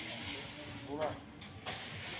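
Long-handled wooden rake dragged through unhusked rice grain spread on concrete for sun-drying: a steady dry, hissing scrape of grain, with a sharper stroke about a second in.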